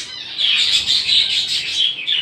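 Many caged small birds chirping and twittering at once, a dense, steady chatter of high calls.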